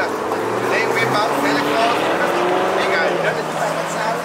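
Car driving past on the road, a steady engine and tyre noise whose engine pitch drifts slowly, with faint voices over it.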